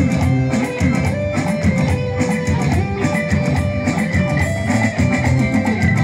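Live band music amplified through a PA: electric guitar melody over drum kit and bass, a steady dance rhythm with no vocals in this stretch.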